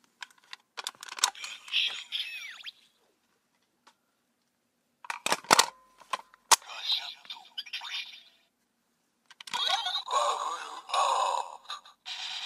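Bandai DX Gashacon Bugvisor toy clicking as its plastic buttons are pressed, each press setting off a burst of electronic sound effects and recorded voice calls from its small speaker. There are three bursts: one just after the start, one about five seconds in and a louder one near the end.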